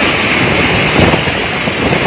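Tsunami floodwater rushing and churning, a loud steady noise with wind buffeting the microphone.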